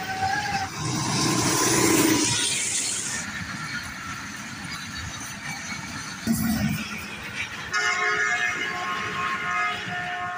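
Passenger train coaches rolling past on the rails, with steady wheel and rail noise. About eight seconds in, a pitched, pulsing multi-note tone comes in over it.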